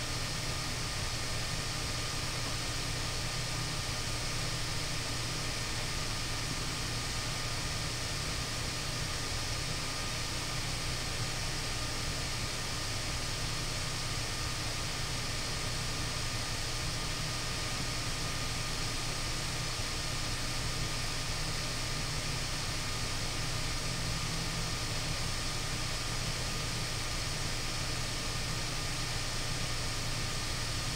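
Steady background hiss with a low hum and a couple of faint, thin whines. It is unchanging room noise picked up by the recording microphone, with no distinct events.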